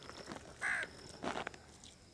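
A crow cawing twice: a short harsh call a little under a second in, and a second one about half a second later.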